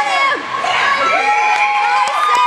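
Hockey spectators cheering and shouting together, with one long held shout through the middle.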